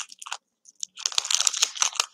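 Foil wrapper of a baseball card pack crinkling and crackling as it is peeled open and the cards are worked out. A few crackles at first, a short pause, then steady crinkling for the second half.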